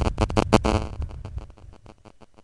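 Crackling, distorted sound from a mobile phone on speakerphone during a ringing call: a run of rapid clicks that fades out over about a second and a half.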